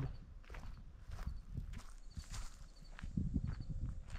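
A person's footsteps outdoors: a run of irregular steps.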